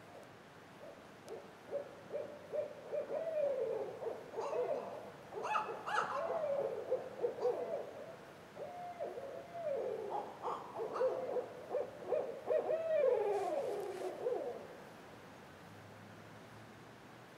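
Owls hooting at night in a long, excited run of wavering calls with sliding, falling slurs. The calls grow louder toward the middle and stop near the end.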